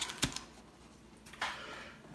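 A few light taps and clicks as a stack of wax-paper card packs is handled and set down on a tabletop: two close together at the start and another about a second and a half in.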